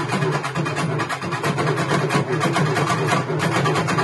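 Urumi melam drum ensemble playing together: a fast, dense, driving rhythm of drum strokes over a steady low drone.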